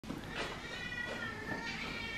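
A cat meowing: one long, high, drawn-out meow starting a little under a second in, begging to be fed.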